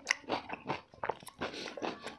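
Close-miked chewing and biting of food: a run of irregular short wet clicks and mouth noises.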